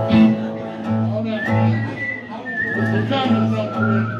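Band instruments noodling between songs: sustained low notes, with a thin high wavering tone that steps down in pitch through the second half, over some room chatter.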